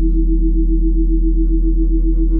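Monaural-beat meditation music: low synthesized drone tones held steady under a brighter tone that pulses evenly about six to seven times a second.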